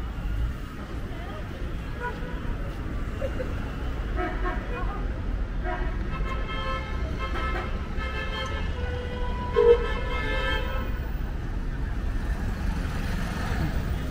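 Street traffic with a steady low rumble, and a run of car horn toots in the middle.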